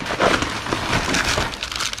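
Rustling and crinkling of a canvas tote bag and the plastic-wrapped packets inside it as gloved hands rummage through them: a dense run of small crackles and rustles.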